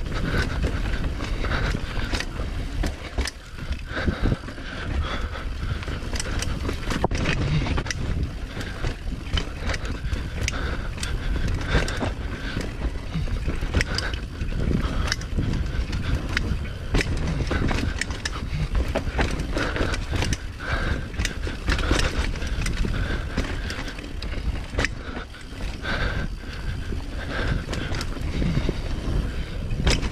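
Mountain bike riding fast down a dirt singletrack: tyres rolling over packed dirt and roots with a steady low rumble, and frequent clicks and rattles from the bike over the bumps.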